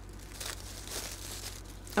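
Plastic mailing bag crinkling softly as it is handled on a tabletop.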